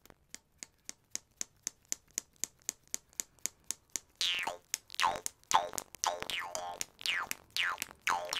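Metal jaw harp plucked with the tongue flattened so the reed slaps into it, giving short dry clicks about four a second. About four seconds in it changes to twangy plucked notes whose overtones sweep downward, about two a second.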